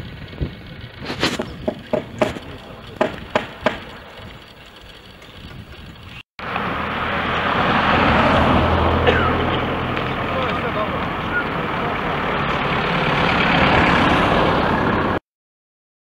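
A small hatchback car driving slowly past close by, a loud steady mix of engine and tyre noise lasting about nine seconds. Before it, in the first few seconds, comes a scattered series of sharp knocks from the construction work on the bridge.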